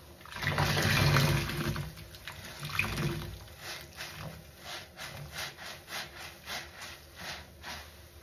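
A large sponge squeezed and wrung by hand in a sink of soapy water. Water gushes out loudly about half a second in, and again with a smaller squeeze around three seconds. Then comes a run of quick wet squelches, about three a second.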